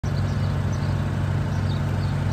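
A vehicle engine idling steadily: an even, low hum with no change in speed.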